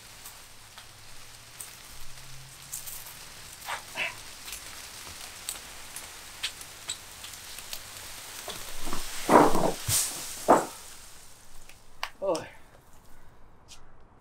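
A felled ficus tree's branches and leaves scraping and crackling as the tree is dragged over dirt and concrete, with many small snaps and rustles. A few short, loud vocal sounds break in near the end.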